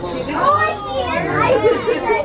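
Excited, high-pitched voices talking and calling out over each other, with no words clear.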